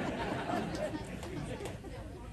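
Quiet chatter of several voices in a large hall, with no amplified speech from the podium.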